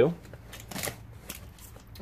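Gloved hands and a knife working at a taped cardboard box, with short scraping and rustling and a few light clicks.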